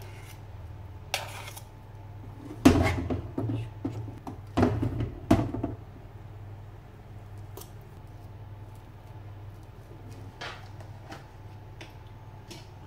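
Metal spoon and fork knocking and scraping against a glass baking dish as mashed potato is spooned and spread, the loudest knocks in the first half. A steady low hum runs underneath.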